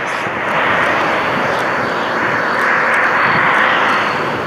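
Steady, loud rushing noise.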